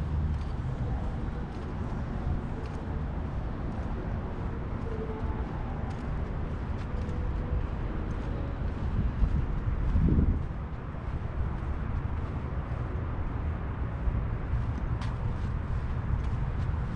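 Outdoor ambience: a steady low rumble of road traffic, with a louder swell about ten seconds in.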